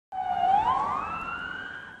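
Emergency vehicle siren wailing: a single tone that dips briefly, then rises slowly in pitch while growing fainter.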